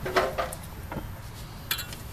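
A few light clicks and clinks of handling noise, scattered through the two seconds.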